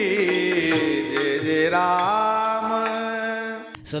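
Devotional intro music: a chant sung in long held notes, the pitch stepping up about halfway through, cutting off abruptly just before the end.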